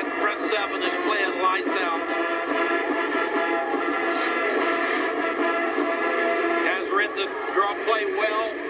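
Music from a televised college football broadcast, played through a TV speaker and picked up off the set. It sounds thin, with no low end, and sustained notes run throughout.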